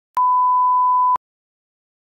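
A single steady electronic beep, one pure tone lasting about a second that starts and stops abruptly.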